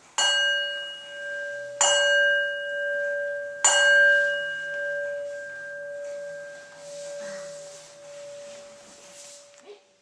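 A bell struck three times, about two seconds apart, each stroke ringing on as a steady tone, with the last fading slowly away over several seconds.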